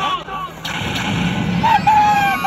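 A staged-fight sound effect: a sharp bang about two-thirds of a second in, followed by a rumbling boom.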